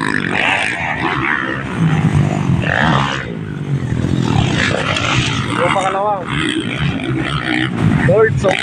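Motocross dirt bike engines revving and running, rising and falling in pitch, mixed with spectators' voices.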